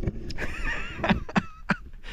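Camera handling noise: a few sharp knocks and rubs as the camera is turned around, with faint wavering high tones in the background.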